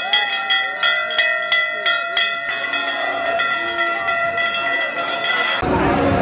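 Metal bells rung rapidly in celebration, about three strikes a second over a sustained ringing tone. The striking stops about two and a half seconds in while the ringing carries on, and near the end it gives way to crowd chatter.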